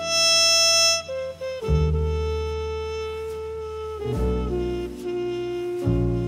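Jazz ensemble recording: saxophone and brass horns play slow held notes over a bass line. A loud bright horn note fills the first second, and the chord changes about two seconds in and again about four seconds in.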